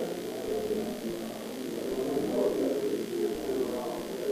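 Indistinct, muffled chatter of several people talking at once, with no single clear voice.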